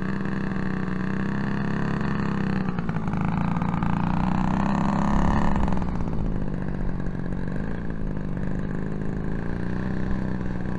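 Engine of a 2350 mm Ryan STA radio-controlled scale model idling as it taxis on grass, still pulling the model along at idle. The revs rise briefly about halfway through, then settle back.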